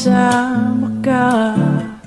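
Acoustic guitar playing chords under a singing voice holding a wavering melodic phrase, in a slow Tagalog acoustic love-song cover. The phrase tails off near the end.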